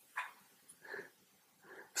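Pen writing on an overhead-projector transparency: three faint short squeaks, each about a second apart.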